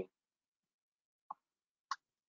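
Sparse computer keyboard keystrokes: a short knock right at the start, then two brief clicks about half a second apart late on, with near silence between.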